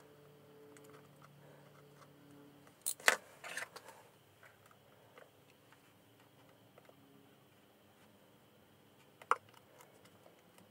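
A few sharp clicks and snips of small scissors cutting book cloth and of hand tools being handled, with a cluster of clicks about three seconds in and a single sharp click near the end, over faint steady hum.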